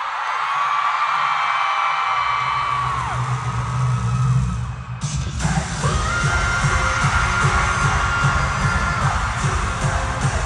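Live K-pop concert music on the arena sound system, heard from the audience: a sparse passage with long held high notes and a bass swell, then about halfway through a heavy bass beat drops in with a sudden hit.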